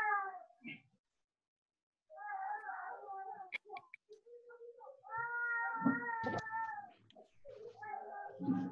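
A cat meowing, heard over a video call: a shorter call about two seconds in, then a longer, drawn-out meow at a steady pitch lasting about two seconds.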